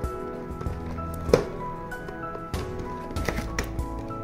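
Background music with held notes, with a few sharp taps over it, the loudest about a second and a half in.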